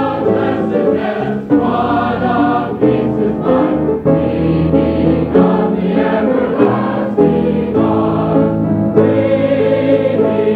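Youth choir singing a hymn in held notes, phrase after phrase. The recording sounds dull and muffled, with the high end cut off, as from an old tape.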